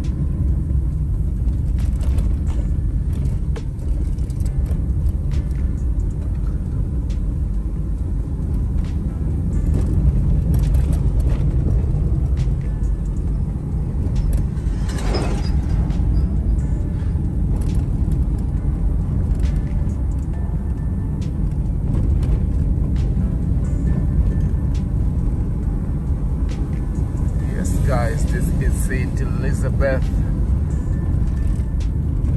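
Car road and engine rumble heard from inside the cabin while driving, with scattered small knocks from the road.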